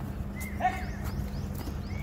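A man shouting a drill count: a single high, drawn-out call of "ek" whose pitch falls away, about half a second in. The next call, "stop", begins right at the end.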